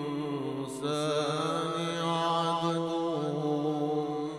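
A man's voice reciting the Qur'an in a long, melodic held line, amplified through a PA system. About a second in there is a short break, and the voice comes back louder on a new phrase.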